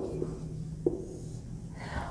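Marker tapping against a whiteboard as a word is finished: a sharp tick at the start and another just under a second in, each with a short ring from the board. A breath is drawn in near the end.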